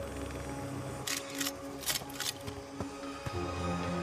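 Background score of held, sustained notes, with several short, sharp clicks between about one and two and a half seconds in.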